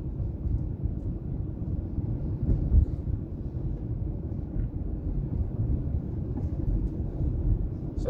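Steady low rumble of road and engine noise inside a moving car, with a brief louder thump a little under three seconds in.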